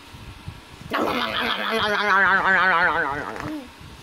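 A reader's voice making a drawn-out, wavering vocal sound effect, a warbling gobble of the piranhas devouring fruit, lasting about two and a half seconds.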